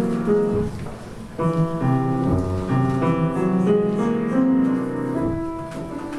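Piano playing slow, sustained chords, with a new chord struck about a second and a half in.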